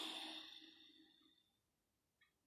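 A woman's long sigh that fades out about a second and a half in.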